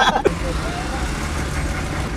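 Car engine and running noise heard from inside the cabin: a steady low rumble.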